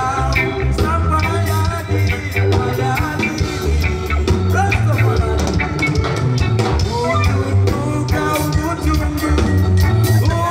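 Live band playing through a large outdoor PA, heard from the crowd: a heavy bass line and drum kit under guitar and a sung vocal.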